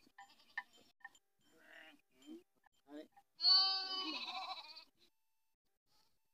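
A goat bleats once, loudly, about three and a half seconds in: one drawn-out call lasting about a second and a half. Fainter short sounds from the flock come before it.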